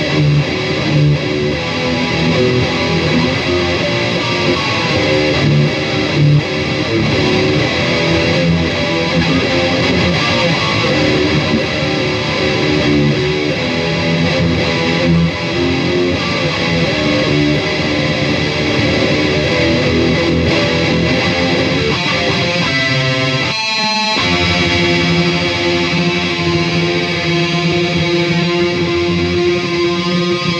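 Charvel DST electric guitar with active EMG pickups, played through distortion and a TC Electronic Mimiq doubler, shredding a continuous stream of fast metal riffs and lead lines.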